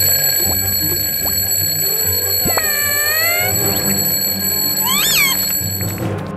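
A toy alarm clock's ringing, played as a cartoon sound effect over children's background music with a steady beat. About halfway through and again near the end come whistle-like sound effects that slide up and down in pitch.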